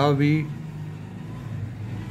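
A man's voice says a couple of words, then a steady low background hum carries on with no other sound.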